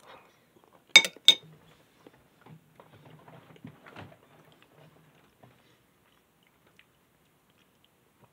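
Two sharp clinks of a metal spoon against a ceramic soup bowl about a second in, then faint chewing of a mouthful of clam chowder with crackers.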